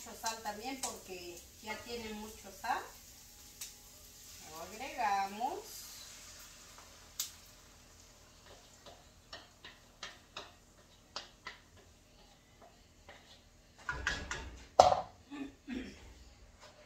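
Wooden spoon scraping and tapping against a frying pan as beaten egg is stirred into frying potatoes, with a faint sizzle. Near the end comes a louder clatter with one sharp knock, the loudest sound.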